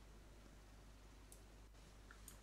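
Near silence: room tone with a low hum, and one faint computer-mouse click a little over a second in.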